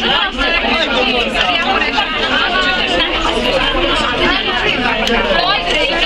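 Crowd chattering: many voices talking over each other at once, steady and loud.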